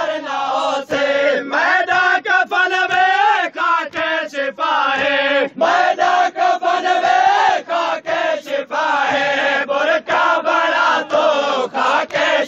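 Men's voices chanting a Saraiki noha, a Shia lament, in a steady pulsing rhythm, the sound dipping briefly several times a second.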